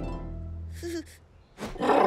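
Cartoon soundtrack: music fades out over the first second, a short falling creature call comes about a second in, and a brief cartoon dinosaur roar sounds near the end.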